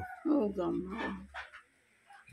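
A woman's voice making drawn-out, wavering vocal sounds, broken into a few short fragments, then falling quiet for the last half second.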